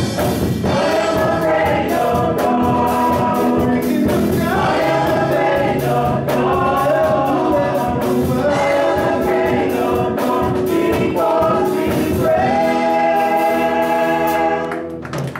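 Group of voices singing a gospel worship song together with live band accompaniment, holding many long notes.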